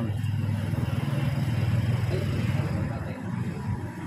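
A motor vehicle engine running close by with a steady low hum, easing off near the end.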